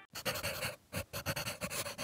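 Logo-ident sound effect: a rapid, uneven run of short noisy bursts, several a second, over a faint steady hum.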